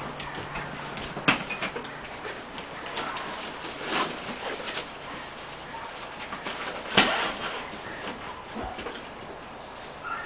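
Handling noise as an AutoPulse chest-compression band is fitted and fastened around a CPR manikin: rustling and scraping of the band and straps with small knocks, and two sharp clicks, about a second in and about seven seconds in.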